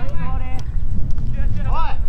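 Players shouting calls to each other across the soccer pitch, over a continuous low rumbling noise.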